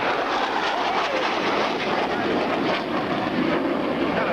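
McDonnell CF-101 Voodoo jet fighter's twin Pratt & Whitney J57 turbojets running at high power in a steep climb, a loud steady jet noise throughout.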